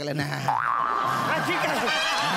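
A comic boing-like sound effect: a quick upward swoop into a held tone about half a second in, followed by short bursts of chuckling laughter.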